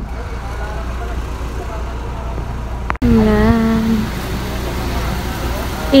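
Steady low rumble of road traffic. It breaks off abruptly about halfway through, and a brief voice follows.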